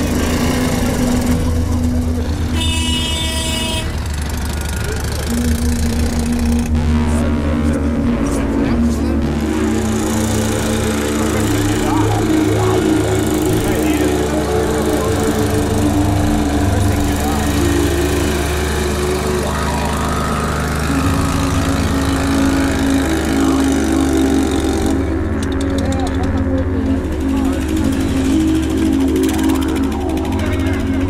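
A dense mix of crowd voices and music of long held notes that change pitch every few seconds, with motorcycle engines running underneath.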